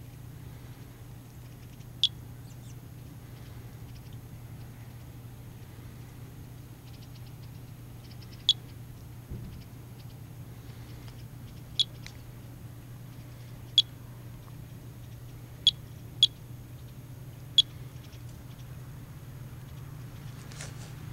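Geiger counter, an S.E. International Monitor 4 in a plastic rain cover, giving sparse, irregular clicks: seven single counts spread unevenly, a low count rate.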